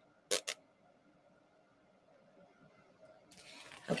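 Two quick crisp rustles of a paper leaflet being handled, a fraction of a second apart near the start, then quiet room tone.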